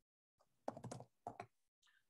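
Faint typing on a computer keyboard: a quick cluster of keystrokes a little under a second in, then two more shortly after.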